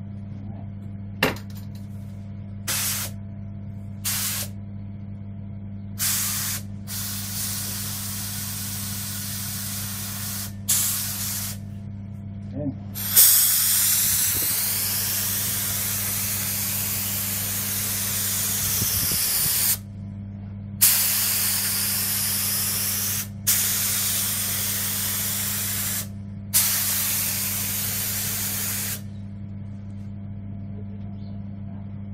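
Activator being sprayed over water-transfer printing film floating in a dipping tank, in a series of hissing spray bursts. Several short bursts come first, then longer passes, the longest lasting about six seconds in the middle. A steady low hum runs underneath throughout.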